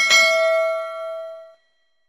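A notification-bell sound effect: a short click, then one bright ding of several ringing tones that fades out and stops about one and a half seconds in.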